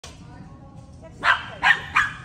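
A small dog barking three times in quick succession: short, high barks about a third of a second apart, the last one near the end.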